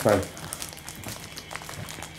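Soft rustling and light handling noises, with a few faint taps, as things are moved about by hand.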